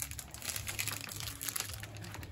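Plastic grocery bags and a plastic snack-bar wrapper crinkling as they are handled, a run of small crackles.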